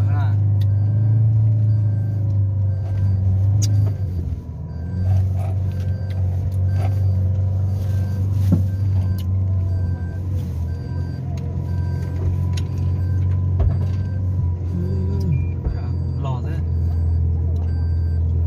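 Car cabin noise while driving slowly along a rough dirt track: a steady low rumble from the engine and tyres, with a few dull knocks from bumps in the road.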